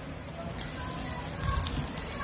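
Clear plastic shrink wrap on a smartphone's cardboard box crackling as fingers pick at it and peel it loose.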